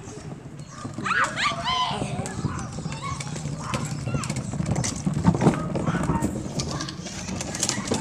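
Plastic wheeled garbage bin rolled along a paved driveway, its wheels giving a continuous rough clatter from about two seconds in. Distant voices call out with high-pitched shouts about a second in.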